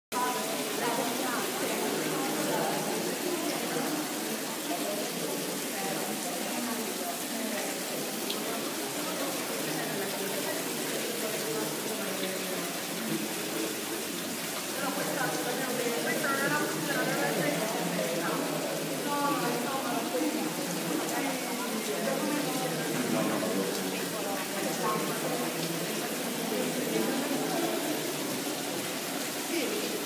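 Indistinct talk of several people over a steady hiss, with no clear words.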